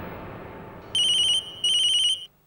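Mobile phone ringing with an electronic trilling ringtone, two short rings, the second one running on just past the end. A fading rush of noise dies away before the first ring.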